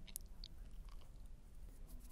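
Faint crunchy snipping of scissors cutting a small, sparse clump of bucktail hair, with a couple of brief light ticks in the first half second.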